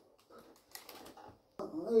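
A voice reading sports news pauses, with only faint clicks and a little hiss, then starts speaking again near the end.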